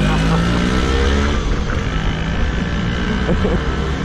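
Engine of a geared Vespa scooter revving up as it accelerates, its pitch rising over the first second or so, then running on under load with road noise.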